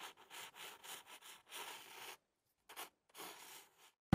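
Faint, uneven scratching and rubbing that thins out about two seconds in, with a few last faint scratches before it falls to near silence.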